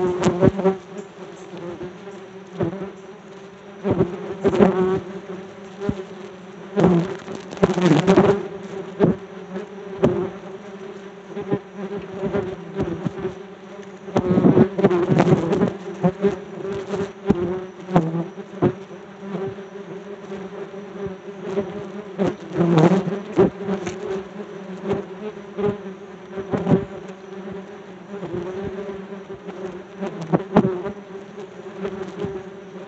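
A swarm of yellow jackets buzzing close around a phone's microphone: a steady drone that swells loudly several times as wasps fly right past it, with frequent sharp ticks throughout.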